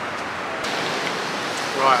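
Steady hiss of sea surf washing onto the beach, a little brighter from about a third of the way in.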